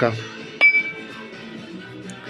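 A single sharp metallic clink with a short ring, a little over half a second in, as a new camshaft knocks against a Soviet M72 motorcycle engine block.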